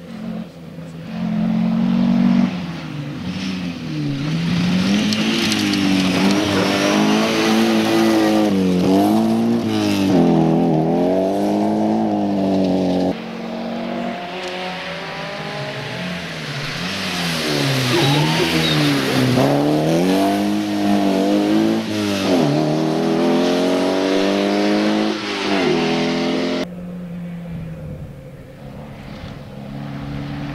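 Opel rally cars at speed on a rally stage, their engines revving hard, the pitch climbing and dropping again and again through gear changes and lifts for corners. The sound cuts abruptly to a second car about 13 seconds in, and drops to a quieter, more distant engine near the end.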